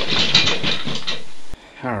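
A loud, edited-in clip of a person's voice that cuts off abruptly about a second and a half in.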